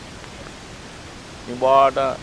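A pause in a man's speech filled by a steady background hiss, then his voice starts again about one and a half seconds in.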